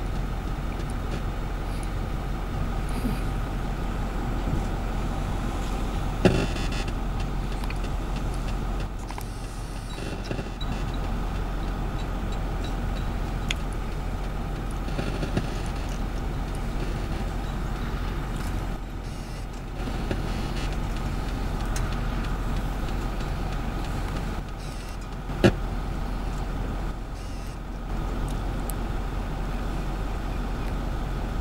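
Steady engine drone of heavy machinery on a building site, with two sharp knocks, one about six seconds in and a louder one about 25 seconds in.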